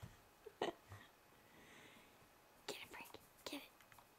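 Faint whispering voice in a very quiet room, with a few brief sharp sounds, the loudest about half a second in.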